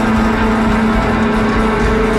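Live band playing a loud, dense instrumental passage built on steady sustained notes.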